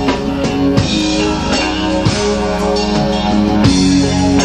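A rock band playing live: electric guitars holding sustained chords over a drum kit, in an instrumental passage without vocals.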